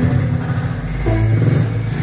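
Electronic IDM music played live on an Ableton Push: held synth notes over a strong bass line, with the notes changing every fraction of a second.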